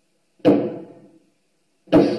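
Two hard strikes of a bar against a solid surface, about a second and a half apart, each ringing briefly as it fades. The blows fail to break through.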